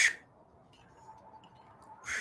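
A woman's short, forceful exhale through pursed lips as she rises from a dumbbell goblet squat, then a quiet stretch. Another exhale begins right at the end.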